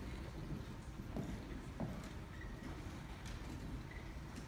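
Faint shuffling and a few soft knocks of footsteps on stage risers as a choir moves into a new formation, over the low steady background noise of a concert hall.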